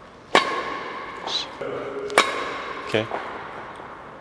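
Badminton racket hitting a shuttlecock with backhand strokes, twice about two seconds apart, each a sharp crack followed by a ringing tone that hangs in the large hall.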